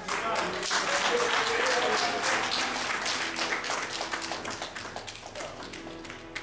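A congregation clapping, with voices calling out among the applause, which is loudest at first and dies away over the last few seconds.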